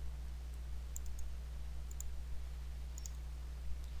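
A few faint, sharp clicks of a computer mouse, spaced irregularly, over a steady low hum.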